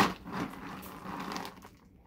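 Scoopful of dry dog kibble tipped into a fabric-lined bag compartment: a loud rush of pellets at the start, then a softer rattle and rustle of kibble and lining that fades out about one and a half seconds in.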